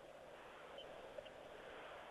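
Near silence: a faint, steady background hiss in a pause of the radio commentary, with two tiny ticks.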